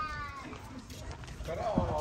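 Voices of people passing close by: a high, slightly falling call at the start and another voice near the end.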